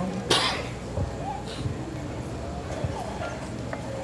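A single short cough about a third of a second in, followed by faint, indistinct voices.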